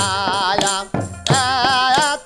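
Bengali Baul jikir song: a man sings a held, wavering vocal line over hand-struck small drum and a jingling frame drum, with strokes about every half second.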